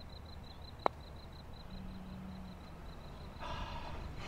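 Quiet background with a low steady rumble and a faint, fast, high ticking, broken by one sharp click about a second in; a breathy rush of sound rises near the end.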